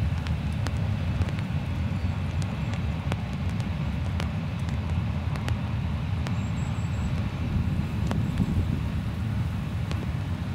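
ST44 (M62) locomotive's 14D40 two-stroke V12 diesel running as the train pulls away, a steady low rumble with occasional faint clicks.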